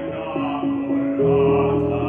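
Classical song in operatic style: a male singer with accompaniment, holding sustained notes over steady chords. A fuller, louder chord comes in about a second in, and the sound rings in the reverberant acoustic of a church.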